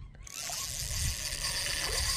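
Spinning reel's drag buzzing steadily as a hooked redfish runs and pulls line off, starting a moment in.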